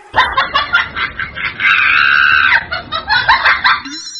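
A woman's exaggerated comic crying: choppy, high-pitched sobs, a drawn-out wail a little before halfway, then more sobbing.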